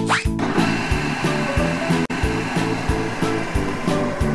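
Cartoon sound effect of a ball-dispensing machine at work: a quick rising swoosh, then a steady whirring hiss, over background music with a steady beat.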